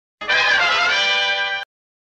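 A short musical sting of held notes, about a second and a half long, that starts and stops abruptly: a transition jingle marking a section break.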